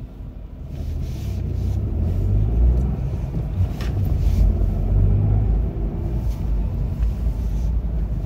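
Car cabin noise as the car pulls away from traffic lights and drives on: a low engine and road rumble that builds over the first couple of seconds, then holds steady.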